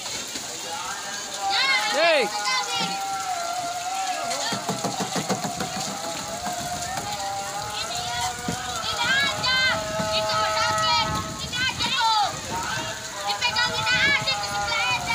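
Children shouting, calling and squealing in a waterpark pool, with long drawn-out yells and many short high-pitched cries. There is some splashing water underneath.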